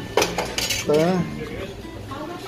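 Clinking and clattering of hard objects being handled, with a sharp clink just after the start and more clatter about half a second in. A short voice sound comes about a second in.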